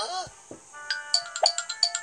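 Cartoon sound effect from a children's Bible story app: a short sliding tone, then a quick run of bright chiming notes like a ringtone jingle.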